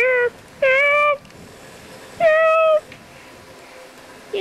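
A child's high-pitched, wordless cries, three drawn-out wails with quiet gaps between, voicing a toy figure calling for help.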